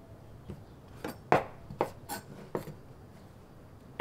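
Thin carrot slices being handled and stacked on a wooden cutting board: about half a dozen light taps and clicks.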